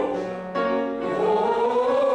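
A group of voices singing a vocal warm-up exercise on held notes, with a short break about half a second in before the next note.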